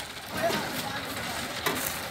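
Brief, faint men's voices over low outdoor background noise, with a short click near the end.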